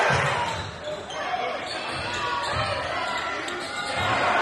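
A basketball bouncing a few times on a hardwood gym floor, with voices from the crowd and players echoing in the hall.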